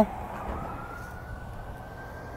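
An emergency-vehicle siren wailing: a single tone slowly rising in pitch, then holding high, over faint background noise.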